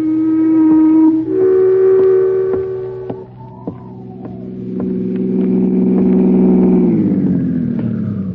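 Ship horns sounding, a radio-drama sound effect: a long steady blast, then a higher one, then a deeper, many-toned blast that sags in pitch and dies away near the end, over a low rumble.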